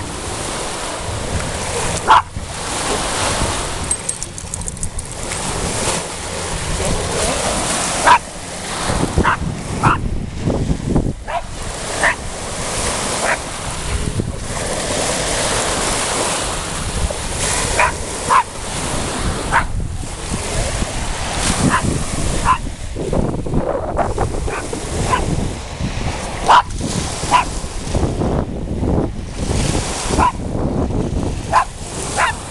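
Small lake waves washing up on a pebbly shore, with a small dog barking sharply again and again at the breaking waves.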